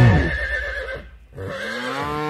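A horse whinnying, followed about one and a half seconds in by a cow's moo that rises in pitch and then holds.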